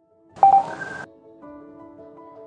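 A short electronic beep sound effect about half a second in: a lower tone then a higher one over a hiss, cut off sharply after well under a second. Soft music with held notes comes in after it.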